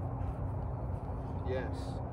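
Steady low outdoor background rumble, with a faint constant hum above it; a man says a single short word about one and a half seconds in.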